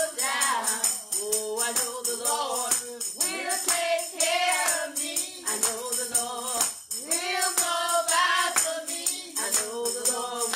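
A woman singing a song while keeping a steady beat on a handheld tambourine, its jingles sounding on each stroke.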